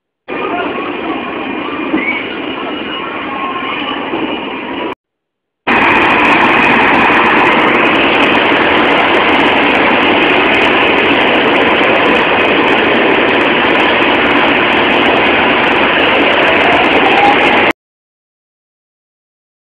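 A loud, steady din of carnival rides running, mixed with crowd noise. About five seconds in it breaks off briefly, then comes back louder, with a faint rising whine near the end.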